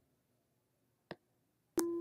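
Near silence with a single faint click about a second in, then near the end another click and a steady pure sine tone of about 340 Hz from a function generator, a higher note than 200 Hz, starts.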